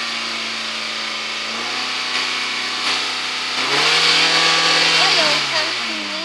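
Hyundai Accent four-cylinder engine running at raised revs while it burns off Seafoam engine cleaner. The engine note steps up twice, holds high for a while, then drops back toward idle near the end.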